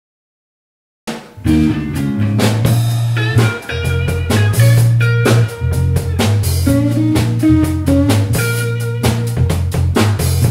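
Electric guitar, electric bass and drum kit playing a jazz R&B instrumental groove, starting suddenly about a second in out of silence, with a strong bass line under regular drum hits.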